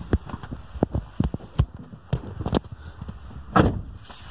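Irregular knocks and bumps, with a louder thump about three and a half seconds in.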